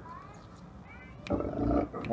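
A dog growls once, briefly, about a second and a half in, after a quieter stretch.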